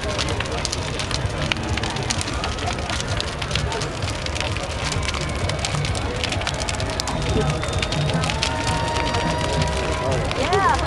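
Large wooden sculpture burning as a bonfire: dense crackling and popping over a low, steady rumble of flames, with crowd voices mixed in. A steady whistle-like tone joins near the end.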